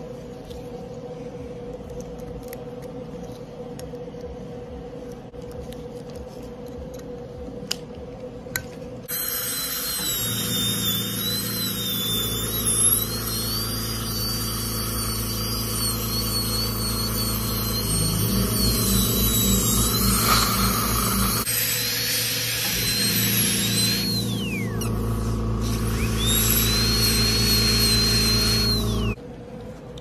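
High-speed dental drill whining as it grinds veneers off the teeth. The whine starts about nine seconds in, wavers in pitch under load, and twice falls away in a downward glide as the drill is let off near the end, over a low steady hum.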